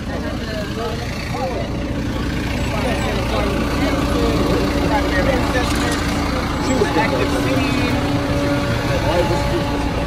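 A bus engine idling steadily, a low rumble with a steady hum, while people talk in the background.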